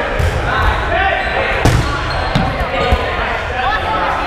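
Dodgeballs striking and bouncing on a hardwood gym floor during play: one loud smack about one and a half seconds in and two lighter hits after it, under players' shouts and chatter echoing in the gym.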